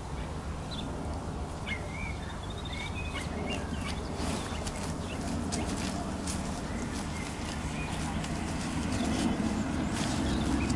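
A blackbird singing short warbled phrases in the first few seconds, over a steady low rumble and scattered clicks of close handling noise as horses nuzzle up to the microphone.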